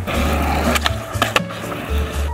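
Skateboard wheels rolling on concrete, with two sharp clacks of the board a little over half a second apart partway through. Background music with a steady bass runs underneath.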